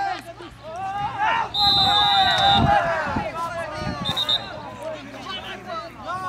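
Referee's pea whistle blown twice, a long blast of about a second and then a short one, stopping play. Players' voices call out over and around it.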